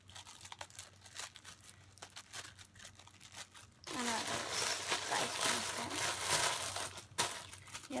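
Thin plastic packaging crinkling as squishy toys are handled and pulled out of their bags: soft scattered rustles at first, then a few seconds of louder, denser crinkling from about halfway through.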